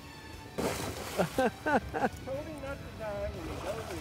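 A loud splash about half a second in as a man jumps into the river, fading over about a second, followed by voices.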